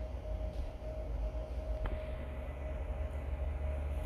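Steady low background rumble with a faint constant hum, and one faint click about two seconds in.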